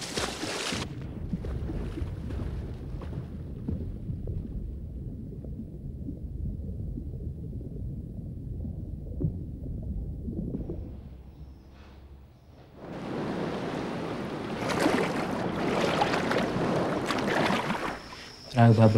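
Open sea: water washing and splashing around a small boat, then a long stretch of low, muffled underwater rumble, and surf-like wash again over the last few seconds.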